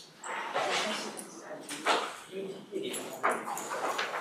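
Indistinct talking by people in the room, in broken stretches of speech that no words can be made out of.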